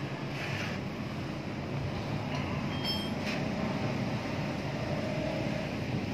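Steady low background rumble, with a few light clicks about three seconds in and a faint thin tone near the end.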